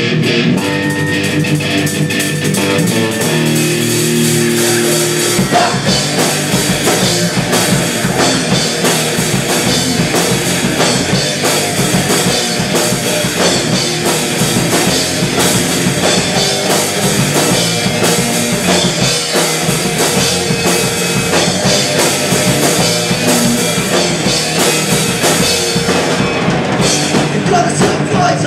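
Live punk rock band playing loud without vocals: electric guitar alone at first, then drums and bass come in about five seconds in and the full band plays on.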